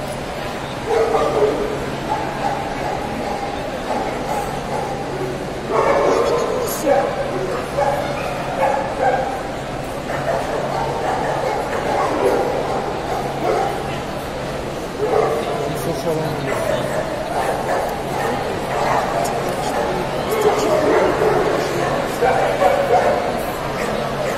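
Dogs barking and yipping amid indistinct crowd chatter in a large hall, over a steady low hum.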